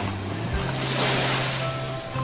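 Ocean waves washing onto a beach, a steady rush that swells about a second in, with some wind. Background music with low bass notes and a drum thump comes in over it.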